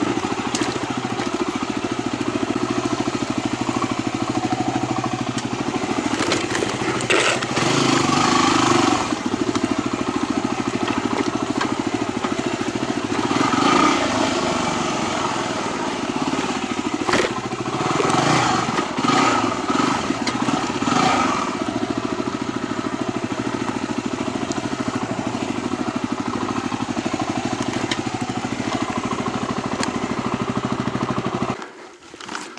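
Yamaha WR250R dual-sport's single-cylinder four-stroke engine running at low throttle, heard from on board, with a few short bursts of revs and a couple of sharp knocks as the bike climbs over rocks and roots.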